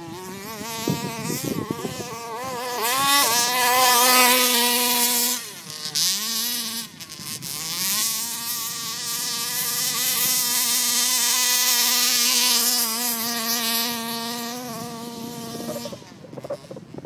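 HPI Baja large-scale RC buggy's two-stroke petrol engine buzzing at high revs: it revs up about three seconds in, drops briefly around the sixth second, then revs up again and holds a steady high pitch before easing off near the end.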